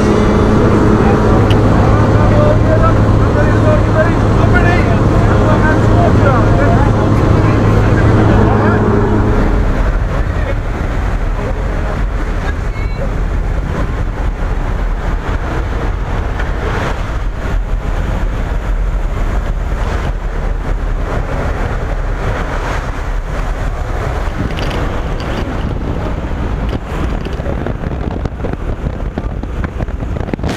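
Cabin noise of a skydiving plane: a steady engine drone with rushing wind. About ten seconds in, the drone gives way to a rougher, gusty rush of wind buffeting the microphone.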